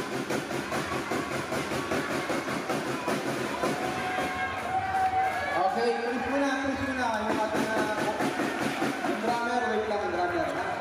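Spectators talking and calling out, a steady mix of many voices, with one voice rising and falling more loudly about halfway through.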